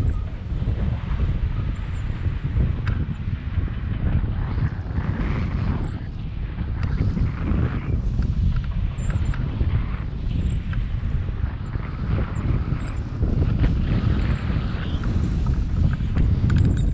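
Wind rushing over the microphone of a camera held out in flight under a tandem paraglider: a steady, loud, low buffeting rumble that rises and falls a little.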